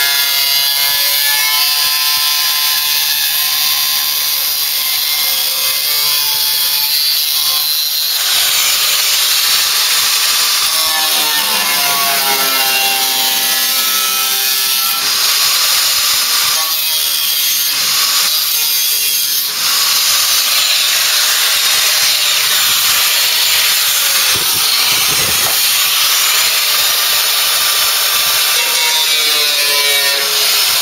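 Electric angle grinder with a thin cut-off disc cutting through sheet-steel floor panel: a continuous loud grinding screech, the motor's whine rising and falling in pitch as the disc bites and is eased off. The noise dips briefly about two-thirds of the way through.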